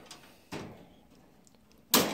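Faint handling noise, then a single sharp click near the end as a hand takes hold of the wire bars of a pet cage.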